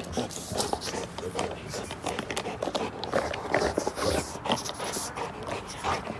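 A Rottweiler chewing and gnawing a plastic dental chew toy: many short, irregular clicks of teeth on the toy.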